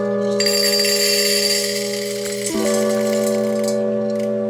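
Background music of slow, held keyboard chords, the chord changing about every three seconds. Over it, coffee beans are poured from a glass into a stainless steel pitcher: a dense, high rattling with a slight metallic ring, starting about half a second in and stopping just before the end.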